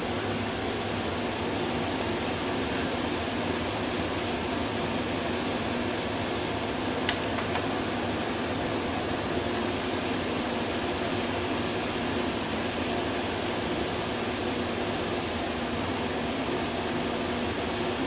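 Blower door fan running steadily, holding the house depressurized for a single-point air-leakage reading at 50 pascals. One brief click about seven seconds in.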